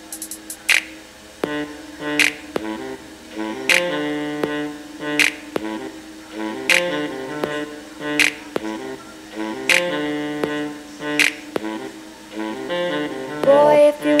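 An instrumental passage of a song played through a tiny M6 pocket mirror Bluetooth speaker: keyboard chords and melody under a sharp clap or snare hit about every second and a half. The sound is thin, with little to no low bass.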